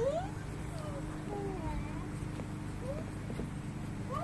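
A toddler's high-pitched vocalizing: a rising sung note at the start, then a few faint, short gliding sounds.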